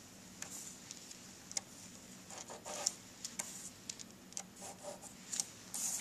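Plastic strip compass drawing an arc on paper: faint scratches of the marking tip on the paper with scattered light plastic clicks and taps as the compass is turned and repositioned.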